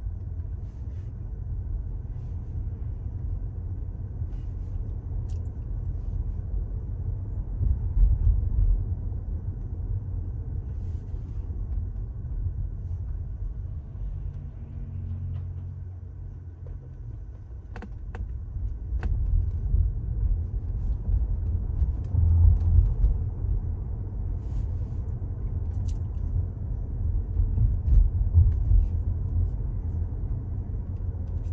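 Low road and tyre rumble of a Tesla electric car driving, heard from inside the cabin, swelling and easing with speed and road surface. Two faint clicks come a little past halfway.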